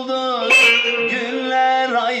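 A man singing a long held note in Turkish folk style, its pitch wavering and sliding, over a plucked bağlama (long-necked saz). A sharp bright attack comes about half a second in.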